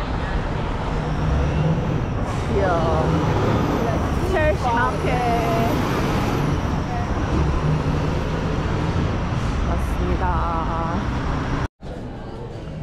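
City street traffic: a steady rumble of passing cars and buses, with voices of passers-by breaking through a few times. It cuts off abruptly near the end.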